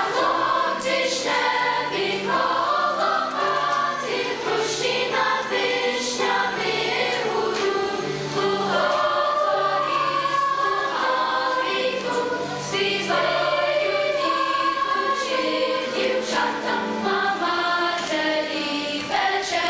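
A choir singing sacred music in several parts, with long held notes.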